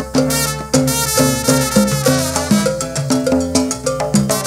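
Live salsa orchestra playing an instrumental intro: a short repeating pitched figure over steady percussion.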